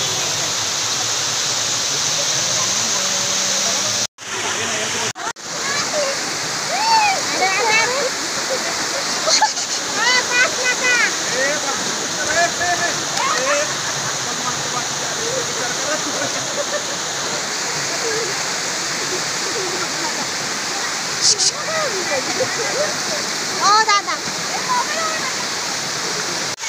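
Waterfall water rushing and splashing over rocks, a steady loud roar. It breaks off abruptly for a moment twice, about four and five seconds in. Voices of people nearby are mixed in underneath.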